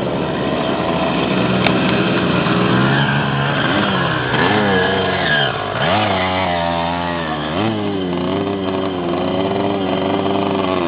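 Dirt bike engines revving as several enduro motorcycles ride past, more than one engine at once, their pitch rising and falling as the riders work the throttle.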